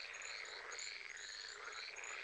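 A faint frog chorus: overlapping trilled calls, each rising and falling in pitch, repeating about every half second.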